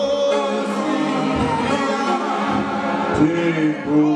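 A group of voices singing together in sustained, overlapping notes, choir-style.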